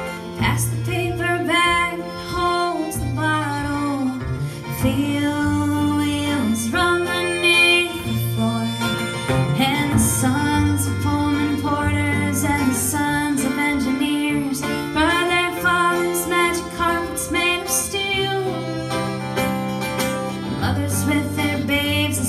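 Acoustic country-folk band playing live: acoustic guitar, fiddle and a stepping bass line, with melodic lines sliding in pitch.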